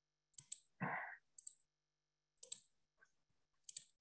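Faint, sparse clicking at a computer while a presentation is being restored on screen: a few sharp clicks, some in quick pairs, spread over the seconds, with a short soft noise about a second in. It is picked up by the webinar participant's microphone.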